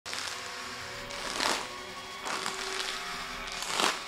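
A man breathing hard into a soft plastic wipes packet held over his mouth, as if hyperventilating into a paper bag: three loud breaths, each with a rustle of the packet, about a second apart. Soft background music underneath.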